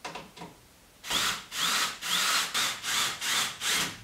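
Cordless drill driving screws through a plywood boom into a wooden gear hub, in a quick run of about eight short bursts starting about a second in.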